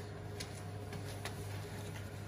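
CNC router spindle running idle, a steady low hum with a faint steady whine above it; the end mill is not yet cutting the steel. Two faint clicks, about half a second and just over a second in.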